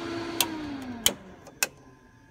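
Three sharp clicks of a light aircraft's rocker power switches being flipped off, about two-thirds of a second apart. After the first click the steady hum of the powered avionics drops in pitch and fades as the G1000 system shuts down.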